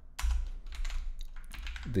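Computer keyboard typing: a quick run of key clicks over a faint steady low hum.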